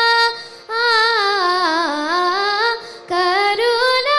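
A girl singing a Carnatic kriti in raga Bilahari, solo voice with heavy gamaka ornamentation. She ends a held note, takes a short breath, sings a long winding phrase that falls and climbs back, pauses briefly near the end, then starts a new phrase. A steady drone tone sounds underneath throughout.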